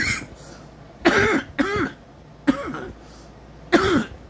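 A man coughing in a fit of about five short, harsh coughs.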